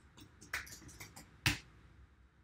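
Computer keyboard keystrokes: a handful of separate key clicks, the loudest about one and a half seconds in.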